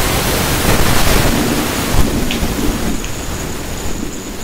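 Loud rumbling, hissing noise across the whole range, with faint, indistinct voices about halfway through.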